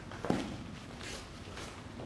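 A dull thud about a third of a second in, then a nunchaku whooshing through the air in two quick swishes.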